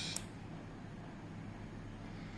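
Steady low hum with a faint hiss: room tone, with no distinct event.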